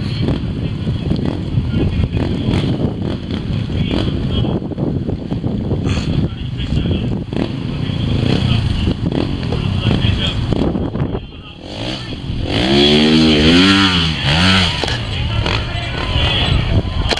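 Crowd chatter around a trials motorcycle. About twelve seconds in, the bike's engine is revved in several quick throttle blips, each rising and falling in pitch; this is the loudest part.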